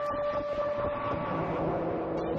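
1978 Serge Paperface modular synthesizer playing a held drone over a grainy, noisy texture; about two-thirds of the way through, the tone drops to a lower pitch.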